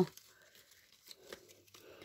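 Faint rustling and a few small crackles as hands work an anthurium clump apart among its leaves and stems to divide it.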